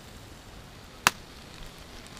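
A single sharp knock about a second in, over a faint steady background.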